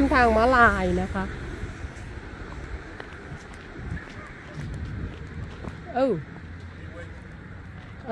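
Quiet night-time street background noise between short bits of speech, with the low rumble of a car that has just passed fading out in the first second or so.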